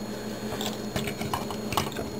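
A few light plastic clicks and clacks, irregularly spaced, as a Transformers Deluxe Camaro Concept Bumblebee action figure is handled and its upper body is swivelled at the waist.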